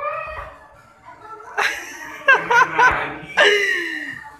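People laughing in several loud bursts through the second half: a quick run of three short laughs, then one longer, drawn-out laugh near the end.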